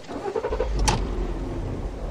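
Car driving, heard from inside the cabin: a low engine and road rumble sets in about half a second in, with a single sharp click just before a second in.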